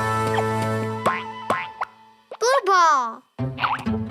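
Children's cartoon music with a held chord and short sliding sound effects, fading out about two seconds in. Then a loud, wavering, falling vocal cry from a cartoon character, after which the music starts again near the end.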